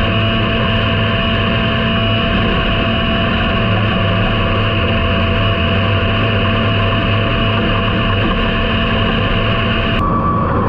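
Dirt late model race car's V8 engine heard from an in-car camera, running with a steady, unchanging drone and no revving.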